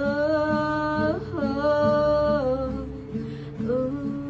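A woman singing over strummed acoustic guitar: a long held 'oh' with a quick slide in pitch about a second in, fading out past the middle, then the next sung phrase starting near the end.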